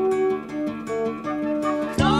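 A song's instrumental gap between sung lines: acoustic guitar playing a string of plucked, held notes, softer than the singing around it.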